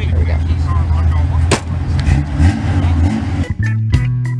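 A steady low hum under faint background voices, with one sharp click about a second and a half in. Near the end the hum stops and rock music with guitar and drums starts.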